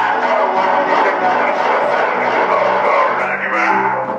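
Live music from a small band: a busily strummed string instrument with a voice at the microphone, playing continuously.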